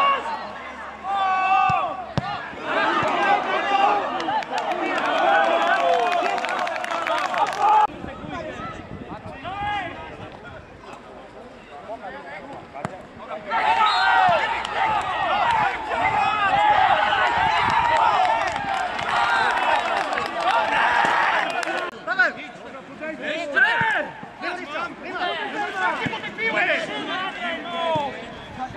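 Men shouting over one another on a football pitch, players and touchline spectators calling out during play. The shouting is loud in two long stretches, with scattered quieter calls in between.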